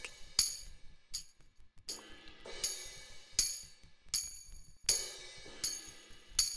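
Sampled tambourine and cymbal hits from the Reason Drum Kits rack extension playing a looped pattern on their own: a bright jingling strike about every three-quarters of a second, each with a short ringing tail.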